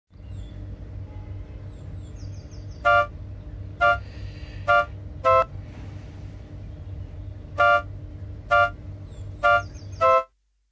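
Vehicle horns giving seven short two-tone toots at uneven spacing over a steady low rumble of street noise.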